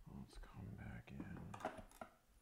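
A man muttering quietly under his breath, too soft for the words to be made out.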